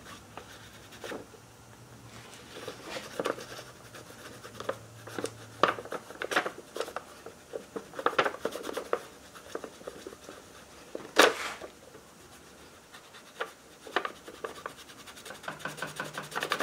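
A fingertip rubbing and scratching across a sheet of paper laid over a metal engine part, with the paper rustling and shifting in short strokes; the loudest scrape comes about eleven seconds in. The paper is being rubbed with graphite dust to take a gasket impression off the part's sealing face.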